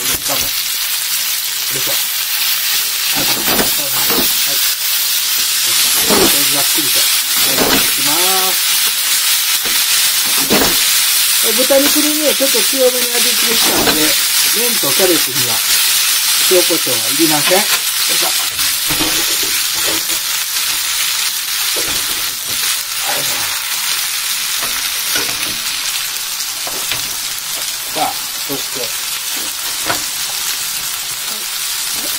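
Noodles, cabbage and pork sizzling steadily in a hot frying pan, stirred and tossed with chopsticks.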